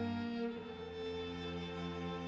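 Chamber ensemble playing slow, held chords in a contemporary classical piece, with bowed violin and cello to the fore. A loud low note ends about half a second in and a softer chord carries on.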